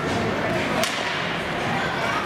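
A single sharp crack of a hockey stick hitting the puck about a second in, over the steady hollow noise of an ice rink and distant voices.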